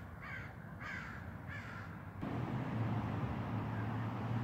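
A crow cawing four times in quick succession, then falling silent about two seconds in, as a low, steady engine drone comes up underneath.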